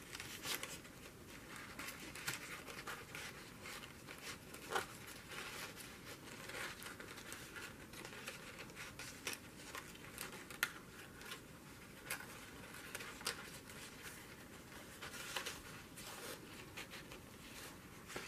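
Faint rustling and light scratching of paper as a cut-out paper snake is handled and tucked into slits in a journal page, with scattered small ticks.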